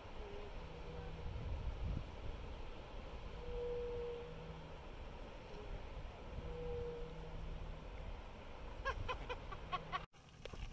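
Wind rumbling on the microphone over a steady outdoor hiss, with two short faint hums about three seconds apart and a quick run of short high chirps near the end.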